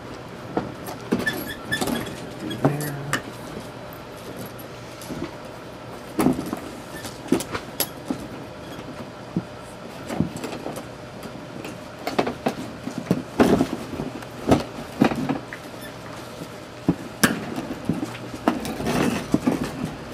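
Scattered clicks and light knocks of stiff insulated copper cable being handled and worked into a metal thermostat box, more frequent in the second half, over a faint steady low hum.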